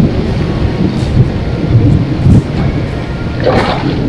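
Wind buffeting the microphone with a steady low rumble, and a burst of splashing about three and a half seconds in as a hooked carp thrashes at the surface close to the bank.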